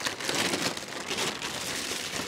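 Silver foil packaging and plastic wrap crinkling and rustling as they are pulled open by hand.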